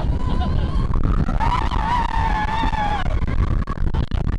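Rock 'n' Roller Coaster train running fast along its track, a loud, steady rumble. Over it, a single long high-pitched voice holds and wavers for about a second and a half in the middle.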